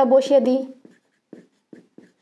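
A woman's voice trailing off in the first second, then a few short marker-pen strokes on a whiteboard as an equation is written out.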